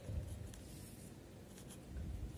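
Pen writing on paper: faint scratching strokes as figures are written, with a soft low bump just after the start and another near the end.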